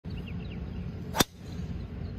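A driver's club head striking a golf ball off the tee: one sharp crack a little over a second in, over a low outdoor background.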